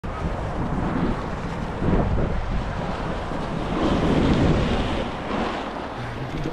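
Wind buffeting the microphone at riding speed, over the hiss and scrape of a snowboard sliding across packed snow, rising and falling in swells.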